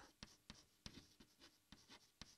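Faint, irregular taps and scratches of chalk writing on a chalkboard.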